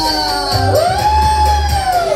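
Live dance music: a woman sings one long, arching note over a steady bass beat.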